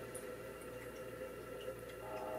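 Quiet room tone: a faint steady hum and hiss with a few soft ticks.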